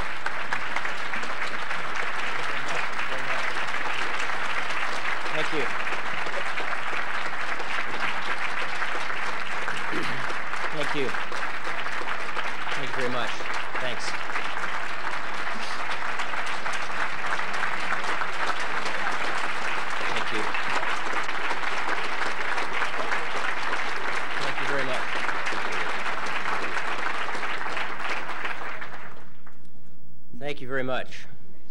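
A large audience applauding steadily, with scattered voices in the crowd; the applause cuts off abruptly near the end.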